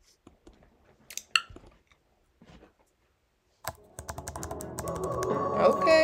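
A few light computer clicks against near silence as playback is started. About four seconds in, the music video's soundtrack comes in, a steady held tone over a low layered sound that grows louder.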